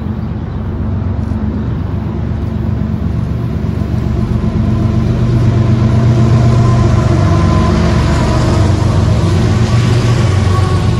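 CSX diesel-electric freight locomotive approaching and passing close by, its engine drone growing steadily louder.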